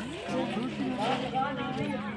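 Indistinct talk from a group of people, with a steady low hum underneath.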